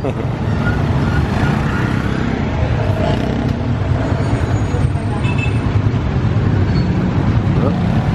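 Street traffic of motorcycles and motorcycle-sidecar tricycles running and passing close by, a steady low engine hum with road noise.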